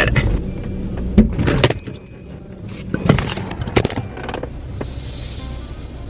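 Car engine running low and steady, heard from inside the cabin, with a few sharp knocks: a bump while reversing, which the driver takes for backing into the car-wash equipment and denting the rear.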